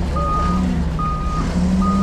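Forklift backup alarm beeping as the forklift reverses, three short single-pitch beeps a little more than once a second, over the low steady hum of its engine.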